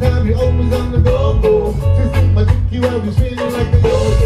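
A live reggae band playing with a steady beat: drums, bass and electric guitars, with a vocalist singing into the microphone.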